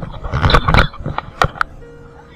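Water splashing and a camera rubbing and knocking against a boat's metal ladder as a snorkeler climbs out of the sea. A loud rush of splashing and rubbing comes in the first second, then three sharp knocks.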